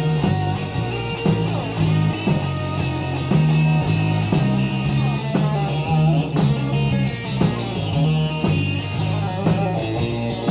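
Instrumental break of a 12-bar blues shuffle: electric lead guitar playing over a repeating shuffle bass line and a steady drum beat.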